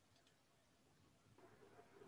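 Near silence: faint room tone of an online call, with a few faint clicks near the start.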